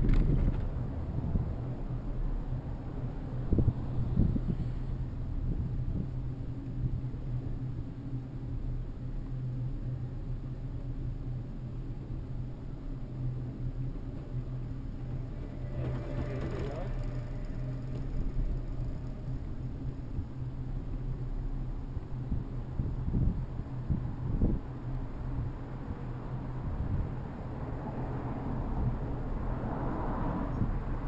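Bicycle riding along a city street: a steady low rumble of tyres and road vibration through the bike-mounted camera, with wind noise on the microphone and a few knocks from bumps in the road.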